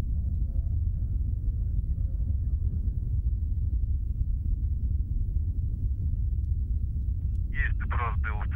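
Distant Soyuz rocket in flight, a steady deep rumble.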